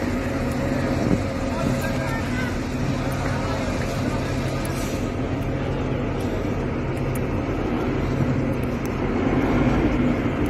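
An engine running steadily with a low, even hum, with voices faint in the background.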